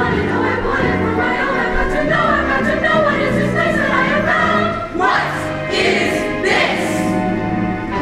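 Mixed high school choir singing with accompaniment, two brief hissy accents about five and six and a half seconds in.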